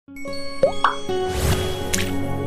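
Channel intro jingle: sustained soft music with two quick rising pops about half a second in, then a rushing swell of noise ending in a bright hit near the end.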